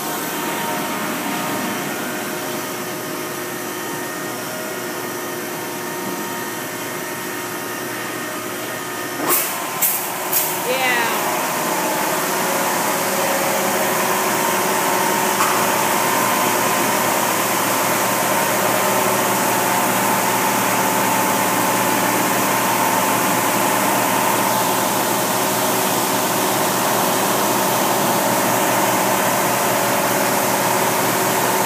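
Hanna tunnel car wash machinery running: conveyor, rotating wrap-around brushes and spray arches, a loud steady mechanical hum with several steady tones. About nine seconds in come a few sharp hissing bursts, after which the spraying is a little louder and stays steady.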